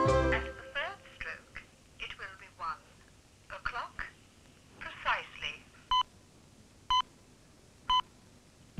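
Telephone speaking clock heard through the handset: a recorded voice announcing the time, then three short identical pips about a second apart marking the exact time.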